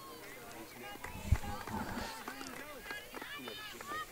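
Several voices calling and shouting across an outdoor field hockey pitch, overlapping and fairly distant, with one sharp thump about a second and a quarter in.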